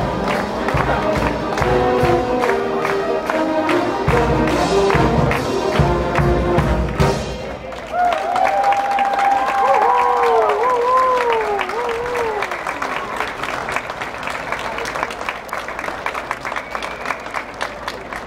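A youth concert band of saxophones, brass and flutes plays, its piece ending about seven seconds in. Audience applause follows, with a few cheers early in it.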